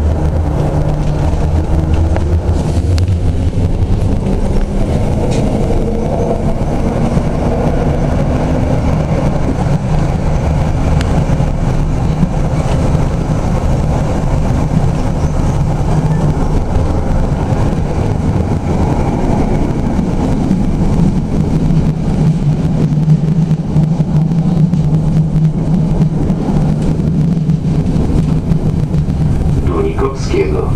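SGP E1 tram running on its rails, heard from the cab: a steady low hum and rumble of the running gear. Its motor tones rise in pitch over the first several seconds as the tram gathers speed, then hold steady.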